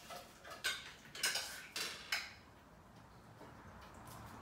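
Cutlery clinking against plates and serving dishes: about six sharp clinks in the first two seconds or so, then quieter.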